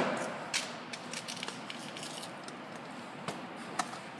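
Scattered light knocks and clicks from someone moving in and around a pickup truck's cab, over a steady background hiss. The loudest knock is right at the start, with a few smaller ones spread through the rest.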